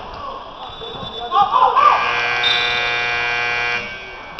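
Gymnasium scoreboard buzzer sounding one steady tone for about two seconds, starting just under two seconds in and cutting off sharply. Just before it, voices shout on the court.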